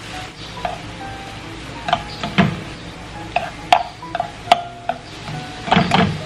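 Noodles being stirred and tossed in a nonstick frying pan with a wooden spoon and chopsticks, the utensils clicking against the pan a few times, over light background music of short, bouncy notes.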